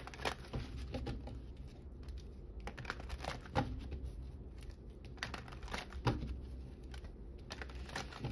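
A tarot deck shuffled and handled by hand: cards clicking and rustling against each other in irregular light taps, over a faint low hum.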